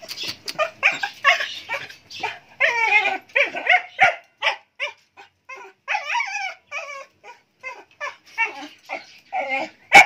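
Dog at a wire-mesh gate barking and whining in a rapid run of short, high-pitched calls, several a second, some wavering in pitch. A sharp knock comes about four seconds in.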